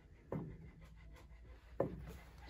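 Two soft thuds about a second and a half apart from an upright piano's keys pressed slowly to the bottom, so the hammer escapes without sounding a note, as in a check of the action's regulation.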